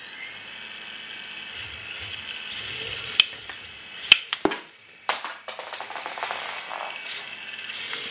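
The drum-weapon motor of a small 3D-printed vertical drum spinner combat robot spins up with a rising whine, then runs at a steady high whine. Sharp clacks come about three and four seconds in and again near five seconds, as the spinning drum hits small plastic figures.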